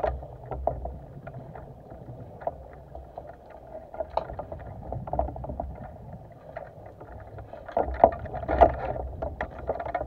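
Underwater scuba noise: a diver's regulator exhaust bubbles rumbling in bursts, loudest about eight seconds in, over a steady crackle of small clicks.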